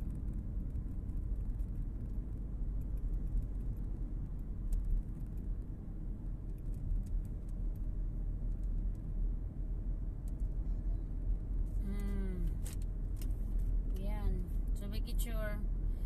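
Steady low road and engine rumble inside a moving car's cabin. A voice speaks briefly near the end.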